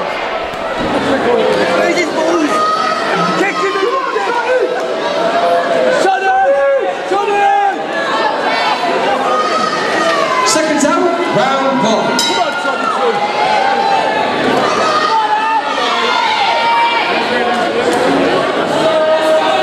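Boxing crowd shouting and cheering, many voices overlapping, with a few short sharp clicks about two-thirds of the way in.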